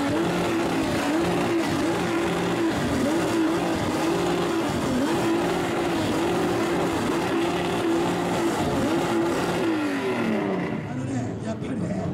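Modified exhausts of classic Japanese cars, a Kenmeri Skyline against a Savanna RX-7 in a loud-exhaust rev-off, revved hard over and over. Each rev climbs, holds high and drops back, repeating every second or two, then the revving falls away near the end.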